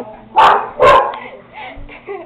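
A dog barking twice in quick succession, about half a second apart.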